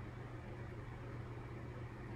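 Steady low hum with a faint even hiss, with no other sound.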